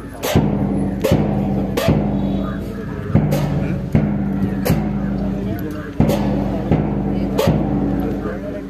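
March music for a parade, with a steady drum beat of about three strokes every two seconds over held low notes.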